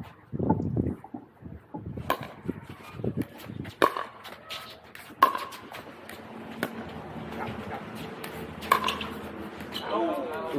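Pickleball paddles striking a hard plastic pickleball during a rally after a second serve: a handful of sharp, hollow pops one to two seconds apart, each with a brief ring.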